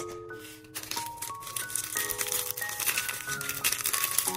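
Background music of held notes stepping from one pitch to another. From about a second in, a small plastic packet of miniature-kit rice is handled, giving rapid crinkling and rattling.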